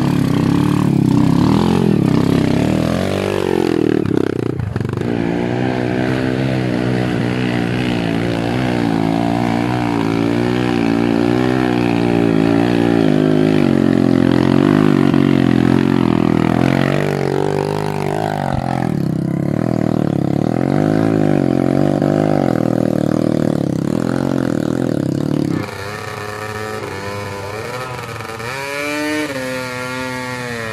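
Trail dirt bike engine revving up and down under throttle as it climbs a steep dirt slope. About 26 seconds in the sound drops suddenly to a quieter engine note that keeps rising and falling in pitch.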